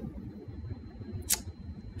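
A single sharp click about a second and a half in, against faint room noise: the click of a computer pointing device's button pressed on an on-screen Add button.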